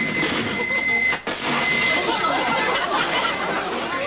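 Commotion with indistinct raised voices over a steady high-pitched electronic tone; the tone is loud for about the first second, then drops to a faint whine.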